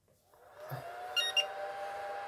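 ToolkitRC M6DAC charger powering up on AC mains. Its cooling fan spins up with a whir and a whine that rises slightly, then holds steady. About a second in, two short electronic startup beeps sound.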